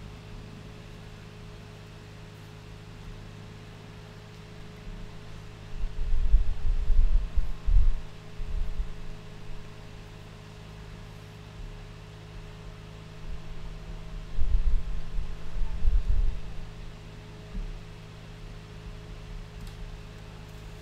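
Steady low electrical hum and hiss of room tone. Two spells of louder, low rumbling bumps come about six seconds in and again about fourteen seconds in.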